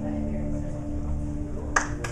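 Hollow-body electric guitar chord left ringing through its amplifier as a song ends, held steady with a low hum beneath. Near the end comes a single sharp clap-like click.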